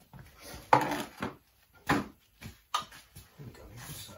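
A plastic drain pan being handled and set down on a concrete floor: a few hollow knocks and scrapes, the loudest a sharp knock about a second in.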